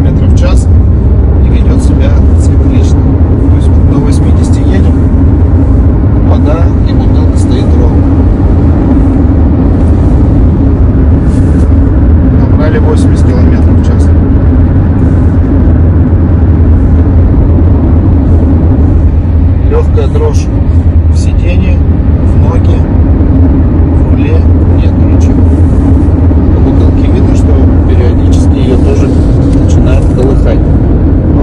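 Steady low rumble of road and engine noise inside a Chery Tiggo 8's cabin at highway speed on a smooth road, with scattered light ticks. The recording was made to show the vibration that sets in from about 80 km/h, a common complaint among Tiggo 8 owners.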